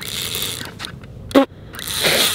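Fishing reel clicking and scraping as the line is worked while it is snagged on something underwater. A short vocal sound comes in about one and a half seconds in.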